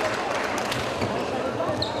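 Badminton hall ambience: murmured spectator chatter, with a few sharp knocks and a brief high squeak near the end.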